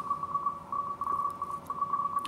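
Morse code (CW) signal on the 40-meter amateur band, received through an RTL-SDR and upconverter and heard as a single-pitched beep keyed on and off, over receiver hiss.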